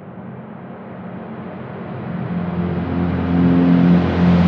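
Drum and bass track intro: a swell of noise that grows steadily louder and brighter as a filter sweeps upward. Low sustained synth tones come in about halfway and build under it.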